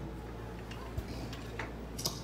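A few faint clicks and a soft thump about a second in, over a steady low hum.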